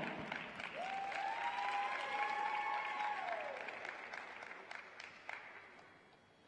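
A sparse audience applauding and fading away steadily. About a second in, one long high held call from a spectator rises over the clapping and then falls away.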